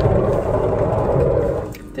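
A van's sliding side door being pulled along its track, a rolling rumble that fades out near the end.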